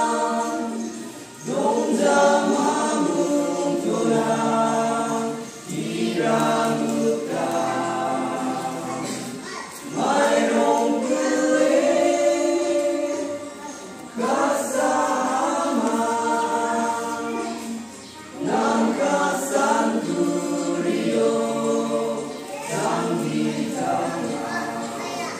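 A group of voices singing together, a choir-like hymn in sustained phrases of about four seconds with short breaks between them.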